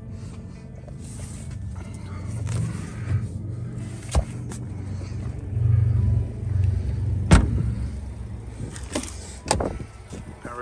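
Steady low hum of the 2022 Lincoln Nautilus idling, with scattered knocks from handling. One sharp, loudest thump about seven seconds in fits a car door shutting.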